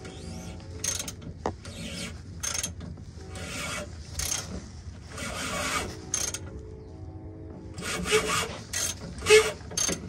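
Socket wrench ratcheting and rubbing on the underbody fuel filter housing as it is worked loose: a dozen or so short bursts at irregular intervals, the loudest near the end.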